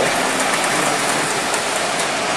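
O-gauge Williams Trainmaster model train running along the layout's track: a steady rushing noise of wheels and motors with no break.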